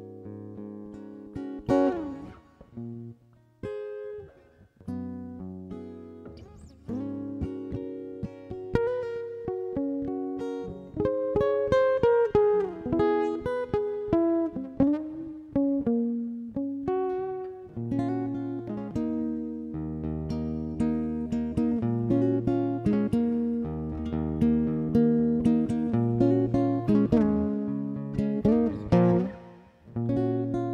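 Solo acoustic guitar playing an instrumental passage of picked single notes and chords. It is softer and sparser at first and grows fuller about ten seconds in, with a steady bass line joining from a little past the middle.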